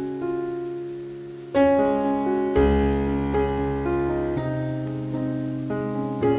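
Background piano music: slow, sustained chords, a new chord struck every second or two, with a deep bass note coming in partway through.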